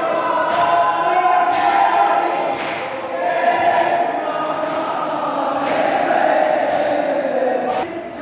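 A group of mourners chanting together in long, drawn-out sung phrases, a devotional lament.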